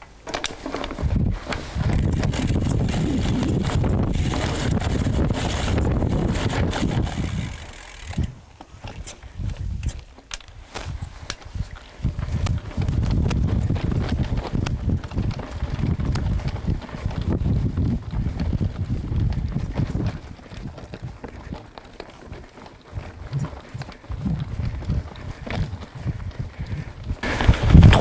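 Mountain bike riding down a rough dirt trail: tyres rolling and the bike rattling over the bumps, in long bouts with a quieter lull about eight to twelve seconds in and choppier, broken noise near the end.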